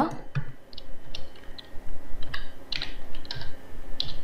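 Typing on a computer keyboard: about a dozen separate keystrokes at uneven spacing.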